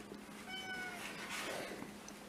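A faint, short pitched call lasting about half a second, falling slightly in pitch.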